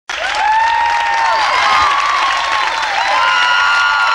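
A live concert audience cheering and applauding, many high voices screaming and calling out at once over the clapping.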